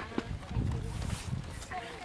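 Wind gusting on the microphone in uneven low rumbles, under faint distant spectator voices, with one short click about a quarter second in.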